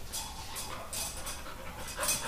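Dog panting quickly and excitedly, a few short breaths a second.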